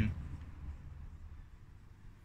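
Quiet background: a faint low rumble that fades away, with the last syllable of a man's voice at the very start.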